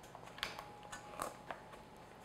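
A pastry blender's metal blades cutting cold butter into a flour mixture in a stainless steel bowl: a handful of faint, irregular clicks and scrapes as the blades hit and drag on the bowl.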